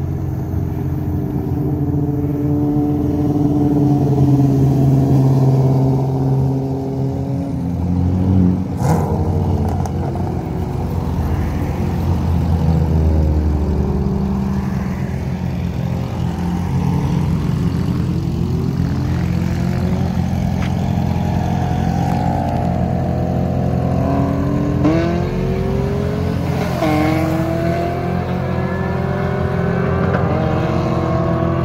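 Modified C6 Corvette LS3 V8 with aftermarket heads and cam accelerating hard in a roll race against a motorcycle, passing and pulling away. The engine notes climb and drop back as the vehicles go up through the gears, with a sharp shift about 27 seconds in.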